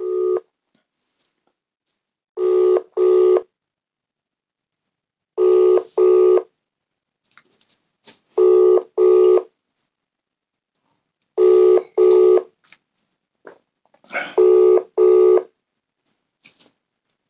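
Telephone ringback tone: a double ring, two short tones in quick succession, repeating about every three seconds while an outgoing call rings unanswered. Five double rings, plus the end of one as it begins.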